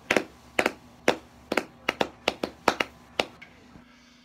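One person clapping hands, about a dozen sharp, unevenly spaced claps that stop a little over three seconds in.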